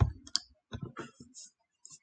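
Several light clicks of a computer mouse and keyboard, unevenly spaced across the two seconds.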